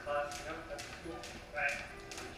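Jump ropes slapping a concrete floor in a steady rhythm, about two slaps a second, with two short snatches of a voice over them.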